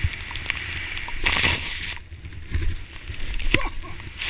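Skis running through deep powder snow, heard from a helmet-mounted camera: a steady rumble of wind on the microphone, with a louder hiss of snow spray between about one and two seconds in.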